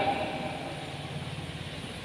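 A steady low rumble, like a motor or engine running, under a hiss of outdoor background noise, with the public-address echo of the last spoken words fading out in the first half-second.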